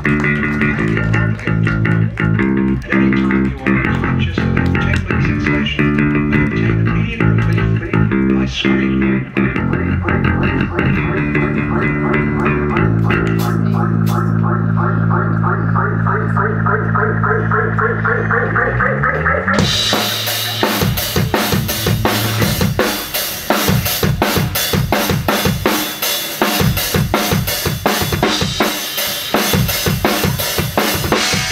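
Live rock band playing without vocals: electric guitar and bass guitar riffs over sustained low notes, building with a rising sweep until the full drum kit crashes in with cymbals about two-thirds of the way through.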